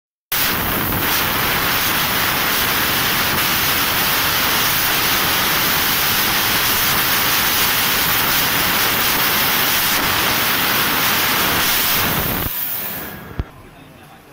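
A 500 W fiber laser cutting 1 mm stainless steel sheet: a loud, steady hiss of the gas jet blowing through the cut, which dies away near the end, followed by a single short click.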